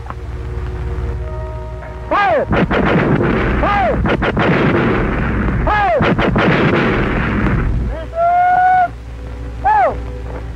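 A quick series of gunshots about two to four seconds in, over a loud rumbling noise, set in a film score with falling, swooping tones and a held note near the end.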